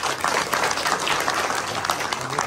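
A round of applause: many people clapping together in a steady, dense patter.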